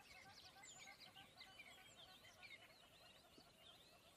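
Near silence with faint, quick bird chirps in the background throughout.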